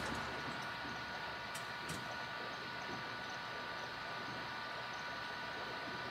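Steady background hiss with a faint high whine, and two faint clicks about a second and a half to two seconds in.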